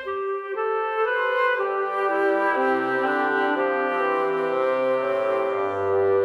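Orchestral music: brass playing sustained chords that shift every second or so, entering loudly just after the start.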